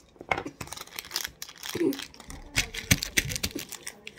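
Plastic snack wrapper crinkling and crackling in irregular bursts as a chocolate bar is unwrapped by hand, with a short laugh near the middle.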